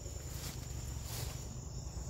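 Insects chirring with a steady, high-pitched even tone, over a low rumble.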